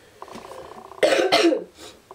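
A girl's short cough about a second in.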